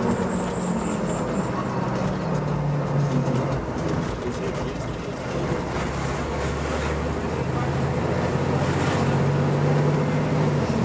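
Inside the cab of a 2014 Seagrave Marauder fire engine under way: the diesel engine runs with its note shifting up and down in pitch a few times, over steady road and tyre noise.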